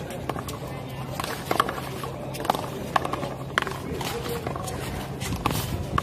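One-wall handball rally: a rubber handball struck by gloved hands and hitting the concrete wall and court, making sharp smacks at irregular intervals, roughly one a second.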